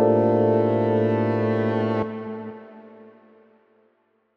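A sustained synthesizer chord over a steady bass note, released about two seconds in and fading away to silence.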